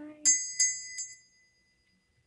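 Small brass hand bell rung three times in quick succession, the first strike the loudest, its clear ring fading away over a second or so.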